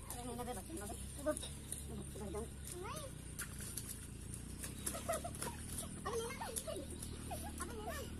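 Faint scattered shouts and exclamations of boys wrestling, short calls that rise and fall, over a steady low hum.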